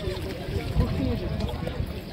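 Indistinct voices of people talking over small waves lapping and a low, uneven rumble.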